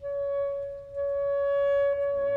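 Solo saxophone holding one long high note, tongued again on the same pitch about a second in, with the orchestra nearly silent beneath it.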